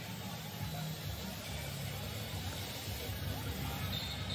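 Quiet, steady broadcast background of an arena game: faint music with low arena sound, no clear speech.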